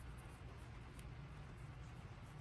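Faint brush strokes of a small paintbrush working shade paint over a 3D-printed skull, with a small tick about a second in, over a low steady hum.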